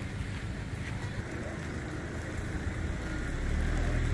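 Low rumble of a running motor vehicle engine, growing louder near the end.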